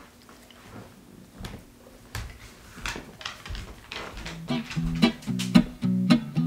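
Scattered soft clicks and taps, then guitar background music with plucked notes that starts about four seconds in and grows louder.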